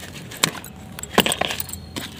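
Plastic bucket being tipped and knocked on a concrete floor, a few sharp knocks and clatters, as a tightly root-bound mint plant is worked loose from it.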